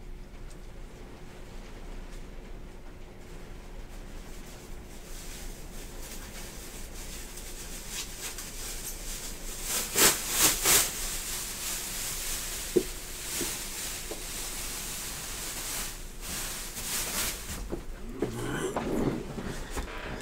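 Steady room tone, broken about halfway by a few short bursts of plastic rustling and a single sharp click, with more rustling and handling near the end.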